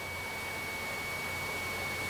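A steady, thin high-pitched tone holding one pitch over a faint even hiss: electronic line noise in the radio recording, heard in a pause between voices.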